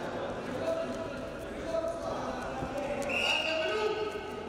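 Wrestling-bout ambience in a large hall: voices calling out from around the mat over dull thuds of the wrestlers' feet and bodies on the mat. A sharper, higher call or squeak stands out near the end.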